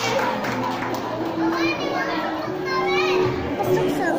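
A group of young children's voices talking and calling out over one another, with a couple of held voice notes in the middle.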